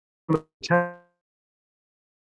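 Two brief, clipped fragments of a man's voice coming through a video call, the second a little longer, each fading out within a fraction of a second, with dead silence around them.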